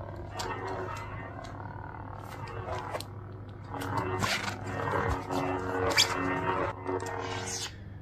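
A xenopixel lightsaber's sound board plays a custom sound font: a steady electronic hum that swells and changes pitch as the blade is swung, with a few sharp hits. Near the end the blade retracts and the hum stops.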